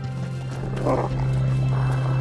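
A wolf growling in two rough bursts, the first about a second in and the second near the end, over a steady low drone of dramatic background score.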